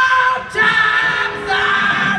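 Live rock band vocals: a sung phrase of long held notes, with the band's instruments mostly dropped out underneath, ending in a short gap about half a second in before the next held note.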